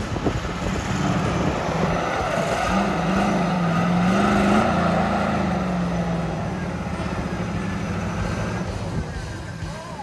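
Off-road 4x4's engine revving while working through an obstacle course, its pitch rising and falling, with crowd voices underneath.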